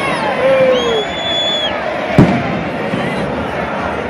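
Aerial fireworks bursting with one sharp bang about two seconds in, over the steady noise of a large stadium crowd.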